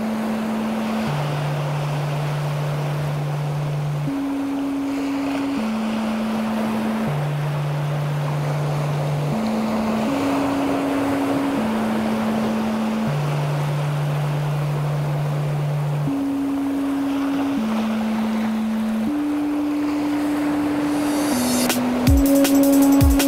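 Intro of a mellow drum-and-bass track with no drums yet: a steady ocean-wave wash of noise that swells gently. Under it runs a slow, low synth line of long held notes that step down and repeat about every six seconds.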